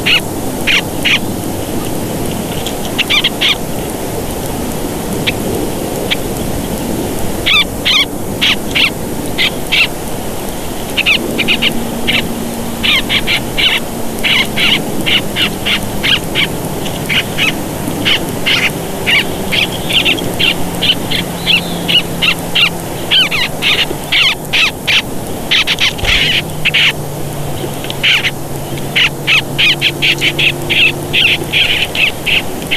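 Birds chirping near the nest camera in quick runs of short, high notes, several a second, with brief pauses between runs, over a steady outdoor hiss.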